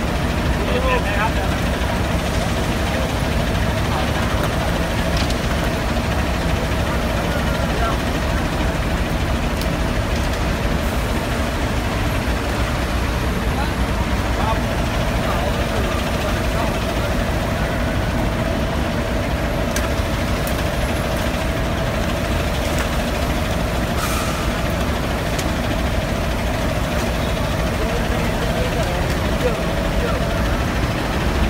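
Coach bus engine idling close by: a steady low rumble with a constant hum, unchanging throughout.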